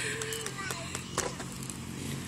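Small youth four-wheeler (ATV) running steadily as a low hum, with faint voices over it and a single click about a second in.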